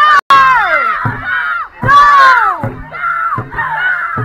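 Loud shouting and cheering voices, with several long yells that fall in pitch. The sound cuts out briefly just after the start.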